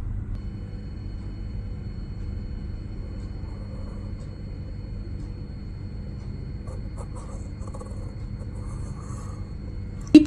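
Steady low background hum, with faint scratching of a compass's pencil lead tracing an arc on paper.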